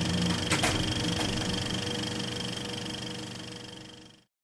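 Electronic logo sting: held steady tones with a sharp noisy hit about half a second in, fading away toward the end.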